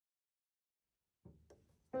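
Silence, then two faint clicks about a second in, and piano music starting suddenly at the very end.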